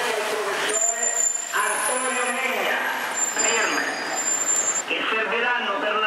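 Talk mixed with road traffic on a wet street as a city bus passes close by. Several thin, high whistling tones sound together for about four seconds, starting about a second in.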